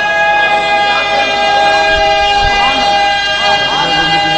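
A man's voice through the PA holding one long, steady high note, with a few other voices calling faintly beneath it.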